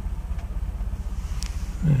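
Toyota 4Runner engine idling while the truck crawls along in low range on both transfer cases, with the transmission in second gear: a steady, rapid low pulsing.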